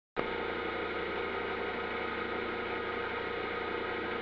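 Large electric motor running steadily: an even hum made of several fixed tones that starts just after the beginning and holds unchanged.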